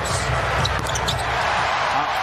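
Arena crowd noise from a basketball broadcast, swelling through the middle of a half-court play, with the ball being dribbled on the hardwood court.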